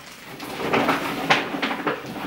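Rustling of a shopping bag and groceries being rummaged through, with a few sharp knocks of items against each other.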